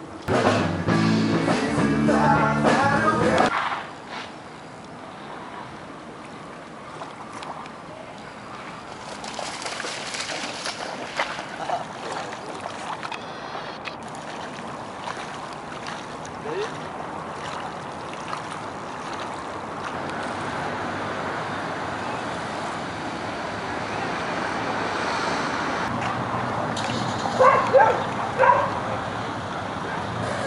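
A few seconds of music at the start. Then steady outdoor ambience of lapping water and wind, with brief voices near the end.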